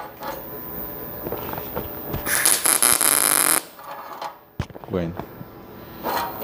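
MIG welder arc struck for a single short tack weld on steel tube: a loud, dense hiss of arc noise about two seconds in, lasting about a second and a half and cutting off suddenly.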